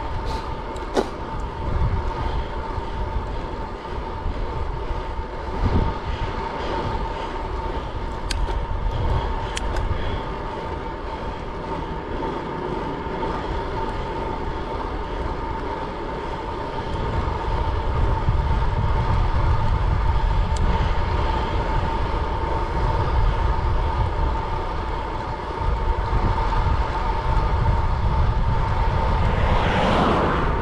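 Riding noise of a time-trial bicycle at about 22 mph: wind rushing over the camera microphone and tyre hum on the road, with a steady high whine throughout. The low wind buffeting grows louder from a little past halfway.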